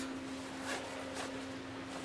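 Faint handling noise from a fabric backpack's top compartment being worked open by hand, with a couple of soft rustles or clicks, over a steady low hum.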